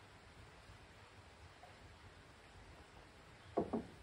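Faint steady background, then near the end two short, soft knocks in quick succession, a fraction of a second apart.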